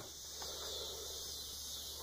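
Faint, steady background hiss with no distinct sound event.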